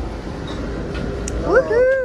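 A short, high-pitched vocal call near the end, rising and then falling in pitch, over a steady low rumble of background noise.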